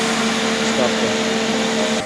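Electric fan of a homemade air cooler running, a steady rush of air with a low motor hum.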